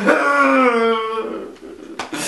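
A man's drawn-out crying wail: one held, wavering note that falls slightly in pitch over about a second, then trails off into quieter sobbing.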